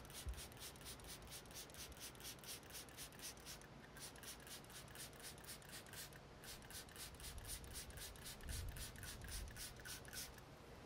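Hand trigger spray bottle squirting liquid cleaner onto a painted truck door: quick, faint spritzes at about five a second, in three runs broken by short pauses about four and six seconds in. A low thud comes just after the start.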